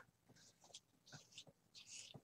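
Near silence: room tone with a few faint, short ticks and soft rustles.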